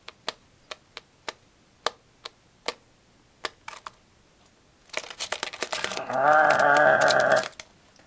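A budgerigar taps its beak on a plastic jar lid, giving sharp separate clicks about two or three a second. About five seconds in there is a burst of faster clicking, then a drawn-out vocal sound lasting about a second and a half.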